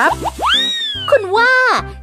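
Background music with a steady bass line under a man's exaggerated acted voice. About half a second in, a comic sound effect plays: a high tone that glides up, then slowly sinks away.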